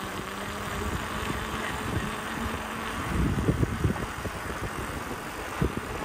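Steady rushing noise of a bicycle rolling on wet asphalt, with wind on the microphone and a low rumble. A few soft low knocks come about three to four and a half seconds in.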